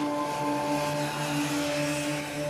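Motorcycles riding along a road: engine and wind noise from a moving bike, under sustained background music tones.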